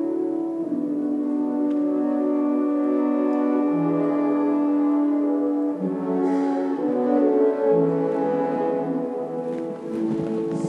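Baroque orchestra playing a slow passage of long held chords that shift every few seconds, heard live in a reverberant hall.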